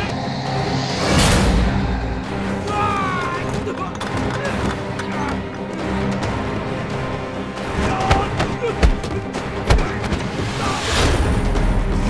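Background music over a fistfight: sharp punch and kick impacts, more of them in the second half, with short grunts and shouts from the fighters.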